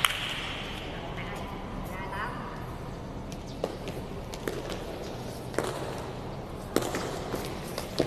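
A feathered shuttlecock kicked back and forth in a đá cầu rally: a few sharp, short slaps of foot on shuttlecock, roughly a second apart in the second half, over a steady hall background with faint voices.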